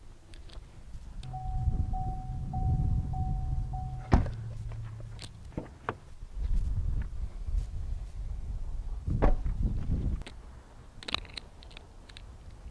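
A car's warning chime dinging in an even, repeating pattern, the sound of a door open with the key left inside. A car door shuts with a thunk about four seconds in and the chime stops. A few lighter latch and handle clicks follow.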